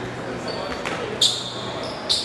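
Shoes squeaking sharply on a sports-hall floor during a foot-shuttlecock rally, loudest once a little past the middle, with a soft click of a kick before it and a murmur of voices in the echoing hall.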